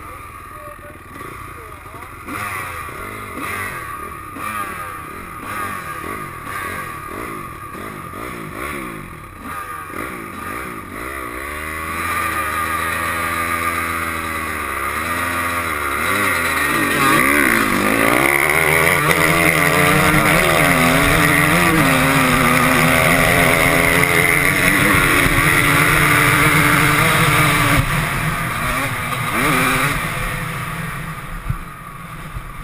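Honda 250 motocross bike engines running, with uneven revving for the first dozen seconds. Then the engine revs hard and pulls away, its pitch climbing and dropping through gear changes, and it settles into a loud, steady run at speed.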